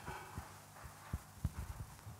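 Footsteps on a raised wooden stage floor, a few low knocks in the second half, with a brief rustle of paper sheets at the start and a steady low hum underneath.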